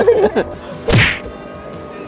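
A single loud whack with a deep thud under it, about a second in, followed by background music with held tones. A voice trails off just before the hit.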